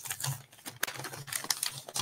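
A run of light, irregular clicks and taps, a few to several a second.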